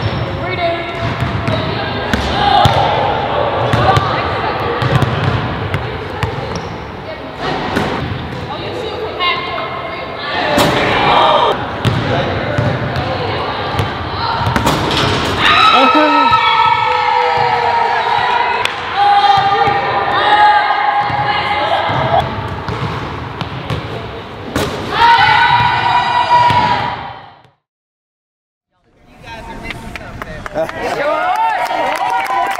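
Basketballs bouncing on a hardwood gym floor over a background of voices; the sound cuts out abruptly near the end.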